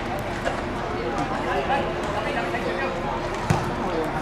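Distant calls and chatter of players, with one sharp thud of a football being kicked about three and a half seconds in.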